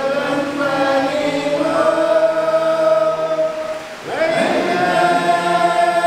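A men's choir singing unaccompanied, in long held notes; the voices drop away briefly about four seconds in, then come back in.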